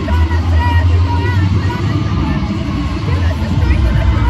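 Chatter of many voices in a large hall over a loud, steady low rumble.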